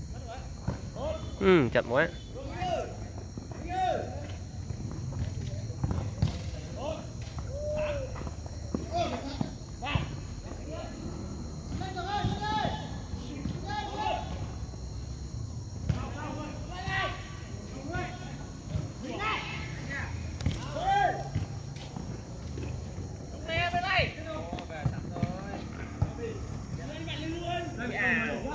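Football players shouting short calls to each other across the pitch during play, with the occasional thud of the ball being kicked and running footsteps.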